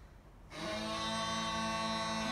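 Bagpipes starting up about half a second in: a steady drone sounds under a chanter melody.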